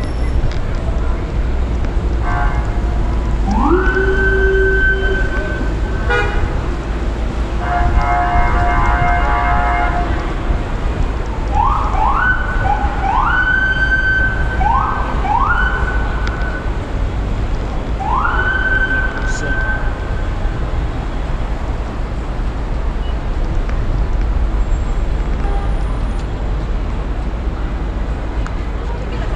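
Emergency vehicle siren giving short whoops, each sweeping up and holding a steady high note, repeated in groups through the first two-thirds, with a rapidly pulsing tone for about two seconds in between. Steady low city traffic rumble underneath.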